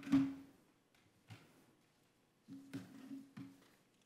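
A few knocks and clicks picked up close to a microphone, each followed by a short low ringing tone: a sharp one at the start, a fainter click about a second later, and a quick cluster of three or four near the three-second mark.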